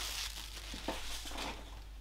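Faint rustling and a few light clicks as loose packing peanuts are scooped up by hand off a tabletop.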